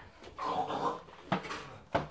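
A young child's brief wordless vocal sound, followed by a single knock about a second later.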